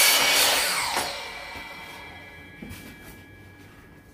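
Bauer 10-inch sliding compound miter saw finishing a crosscut through a thin board, loud for about the first second. The motor is then switched off and the blade's whine fades as it winds down over the next couple of seconds.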